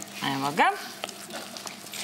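A brief woman's voice, then faint stirring of a thick, pasty coconut-flour mixture with a silicone spatula in a plastic bowl.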